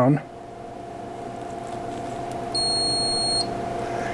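A single high electronic beep, just under a second long, about two and a half seconds in: an under-voltage warning tone set off as the power supply's output voltage is turned down, which the owner thinks came from the RIGrunner power distribution panel. Under it a steady electrical hum slowly grows louder.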